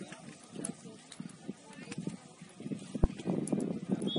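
Distant voices of soccer players and spectators calling and talking, growing busier toward the end, with scattered taps and one sharp thud about three seconds in.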